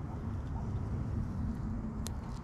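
Low, uneven outdoor rumble with no distinct sound events.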